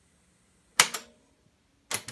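Mechanical clacks of the push-key controls on top of a Sears cassette boombox being pressed: a sharp double clack about a second in, then another clack near the end.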